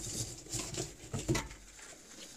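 Handling noise: a few soft knocks and rustles as a glass bottle is fetched from under a table, with clothing rubbing on a lapel microphone as the body bends.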